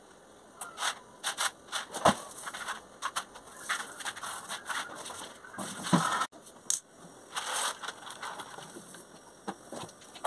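Kitchen work sounds: scattered clicks, knocks and scrapes of pots, lids and utensils being handled, with one louder knock about two seconds in.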